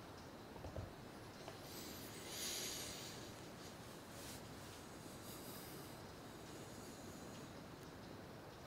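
A soft knock about a second in as a small object is set down, then a long breath out through the nose lasting about a second, over faint room hiss.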